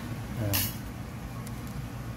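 A man's brief hesitant "uh" over a steady low hum, with a short hiss just after it.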